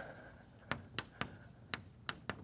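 Chalk writing on a blackboard: four sharp taps as the chalk strikes the board, the last three close together in the second half, with faint scratching between them.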